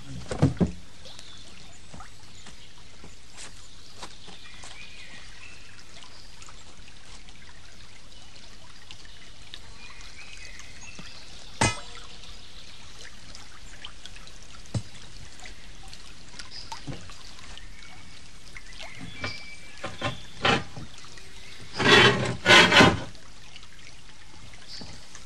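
Water pouring and trickling over a wooden undershot waterwheel as it turns, with occasional sharp wooden knocks. Two louder clattering bursts come near the end.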